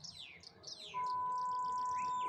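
Small birds chirping in quick falling notes. About a second in, a steady unbroken test tone starts from the TV speaker and becomes the loudest sound: the line-up tone that accompanies colour bars on a satellite feed channel.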